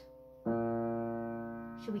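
Piano: a left-hand B-flat struck once about half a second in, sounding together with a held D, then left to ring and slowly fade.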